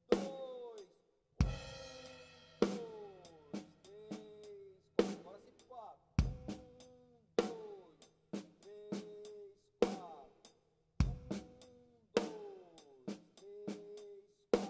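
Acoustic drum kit playing a steady groove of bass drum, snare and cymbal strokes, with a stroke about every half second to second and the drums ringing on after each hit. About one and a half seconds in, a cymbal shimmers over the beat.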